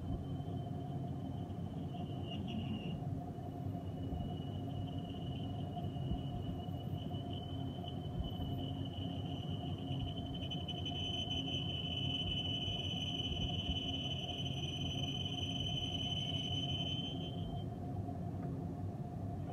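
Metal lathe turning a bar while the cutting tool peels off long stringy chips: a steady machine hum with a thin, high whistle from the cut. The whistle grows louder about ten seconds in and stops shortly before the end.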